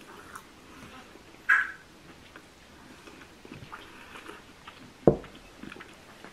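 A person chewing a mouthful of sausage roll: faint mouth and chewing sounds, a short breathy sound about one and a half seconds in, and a single sharp knock about five seconds in.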